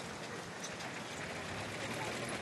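Steady background noise with no distinct events: an even, hiss-like ambience.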